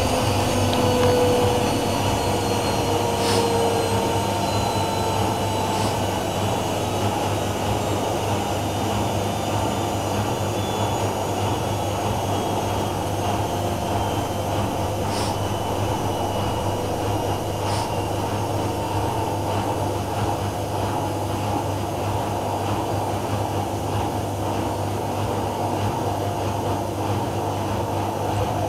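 Two front-loading washing machines running side by side, with the Miele W5748 winding down from its 1600 rpm final spin. Its motor whine falls in pitch over the first few seconds and then settles into a steady low hum, with a few faint clicks.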